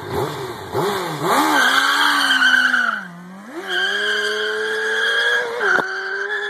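Honda CBR600 inline-four sport bike revved in a few quick blips, then held at high revs with the rear tire spinning and squealing. The revs dip briefly about halfway through, then climb and hold again. The tire squeal is the wheelspin of a lowered, stretched bike that can't get traction.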